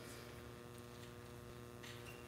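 Steady low electrical mains hum in the audio chain, a faint room tone with almost nothing else audible.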